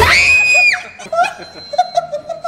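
A girl's high-pitched scream, rising sharply and held for about three quarters of a second, then laughter, as the golf cart she is driving moves off.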